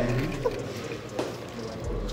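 A lull in a small group's talk: a voice trails off at the start, then faint murmuring and a few brief vocal sounds from the people standing around.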